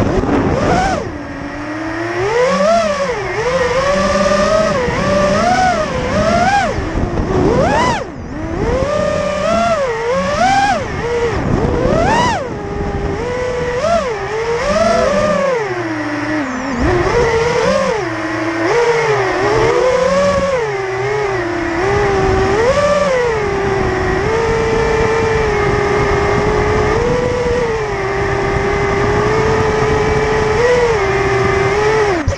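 BrotherHobby Returner R5 2306 2650kv brushless motors of a five-inch FPV quadcopter on a 5S battery, heard from the onboard camera: the whine rises and falls with throttle, dipping sharply about a second in and again about eight seconds in. For the last several seconds it holds a steady pitch.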